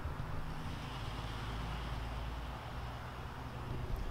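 Steady low hum of a car engine idling, over outdoor background noise.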